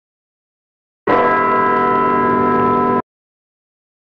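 A held, bell-like electronic chord lasting about two seconds, starting and cutting off abruptly: a sound effect laid over the section-title transition.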